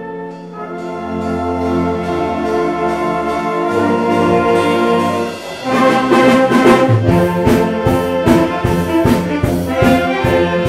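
A band of violins and brass playing a Christmas song: held chords swell for the first half, then about halfway through the full band comes in louder with the brass to the fore. A steady beat of about two strokes a second follows.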